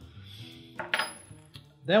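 A single light metallic clink about a second in, with a brief high ringing tail, from hands handling the metal-ringed adjustment knob on the stainless-steel pasta machine.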